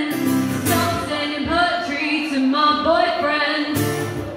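A woman singing while strumming an acoustic guitar, her voice gliding between held notes over the guitar chords.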